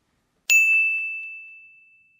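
A single bright bell ding sound effect about half a second in, one clear tone that rings out and fades away over about a second and a half.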